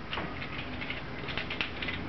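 Light metallic clicks and scraping as a thin metal locking tang is slid down into the bore of a hand-made metal injector-sleeve puller. The small irregular clicks come thicker in the second half.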